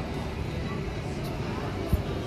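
Busy pedestrian street ambience: indistinct chatter of passers-by over a steady low rumble, with one short low thump near the end.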